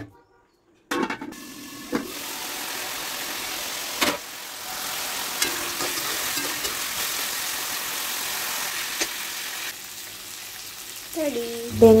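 Chicken frying in a wok, a steady sizzle, with a spatula stirring and knocking against the pan a few times. The sizzle drops off about ten seconds in.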